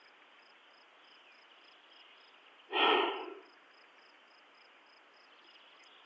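A man sighs once, a breathy exhale lasting well under a second, about three seconds in. Behind it crickets chirp faintly in an even pulse, about three chirps a second.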